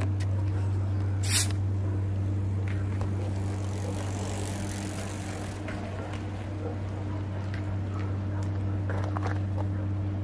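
A steady low hum runs throughout, and a bicycle rides past near the middle with a soft rush of tyres.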